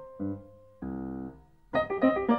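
Grand piano playing: a held note and a few separate chords, with a fuller chord held for about half a second that stops abruptly. After a brief near-quiet pause, fast dense playing comes in near the end.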